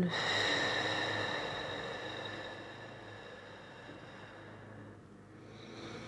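A woman's long, audible exhale close to the microphone, loudest at the start and fading away over about five seconds, with a faint breath near the end.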